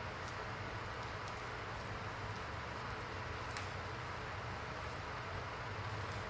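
Plastic deco mesh rustling as hands tuck curls into a wreath, with a few faint clicks, over a steady background hiss.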